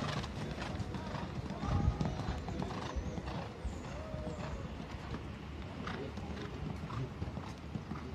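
Hoofbeats of a show-jumping horse cantering on a sand arena, with faint voices in the background.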